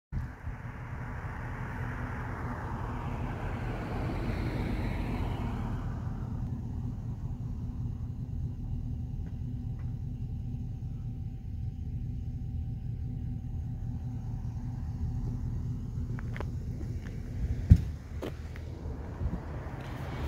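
Steady low road and engine rumble of a pickup truck driving, heard from inside the cab. A rushing hiss fills the first few seconds, and a single sharp knock comes about two seconds before the end.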